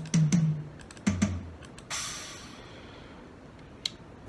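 Sampled drums from the MT Power Drum Kit software, sounded one hit at a time: two higher drum hits, a lower drum hit about a second in, then a cymbal that rings and fades. A small click comes near the end.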